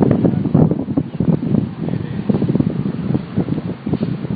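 Wind buffeting an outdoor microphone, an uneven rumble with crackling gusts that eases somewhat toward the end.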